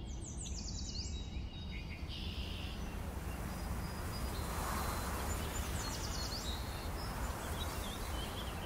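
Outdoor nature ambience: small birds chirping in short, quick, stepped phrases near the start and again about six seconds in, over a steady low rumble.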